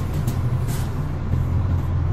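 Steady low background rumble, with a couple of faint clicks in the first second.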